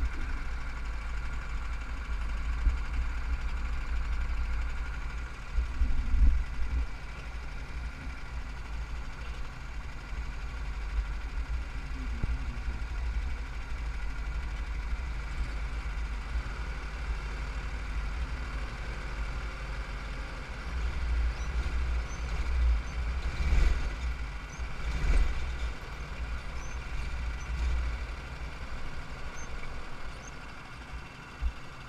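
Go-kart engines running at low speed as a line of karts rolls slowly round the track, heard over a heavy low rumble of wind and vibration on the kart-mounted camera. The rumble swells louder about six seconds in and again around the 23 to 25 second mark.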